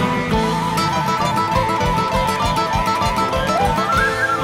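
Andean huayno played live by a band, with acoustic guitar over a steady drum and bass beat. A long held melody line sits above it and slides upward near the end.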